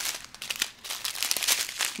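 Small plastic zip-top bags of diamond-painting drills crinkling as they are handled and shuffled, an irregular run of crackly rustles.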